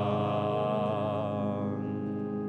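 The final held note of a Spanish Marian hymn, sung with vibrato and fading out near the end, over instrumental accompaniment that holds a steady chord.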